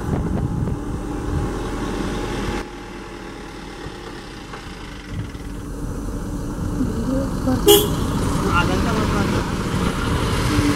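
Vehicle engine and road noise with people talking quietly, recorded from a car, and one short loud sound like a horn toot about three-quarters of the way in. The sound drops suddenly in level a little over two seconds in, then builds again.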